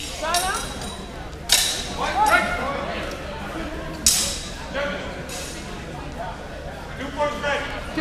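Steel swords clashing in a fencing exchange: two sharp, ringing strikes, one about a second and a half in and one about four seconds in, with short shouts from voices around them.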